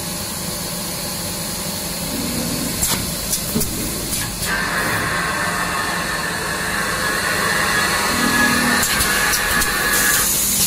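Automatic facial tissue bundling and packing machine running: a steady mechanical noise with a few sharp clacks. About halfway through, a steady higher-pitched hiss joins in.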